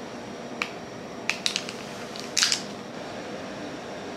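Clear plastic wrapper of a hamburger-shaped gummy candy crinkling as it is opened: a single crackle about half a second in, a quick run of crackles around a second and a half, and the loudest burst of crinkling near two and a half seconds in.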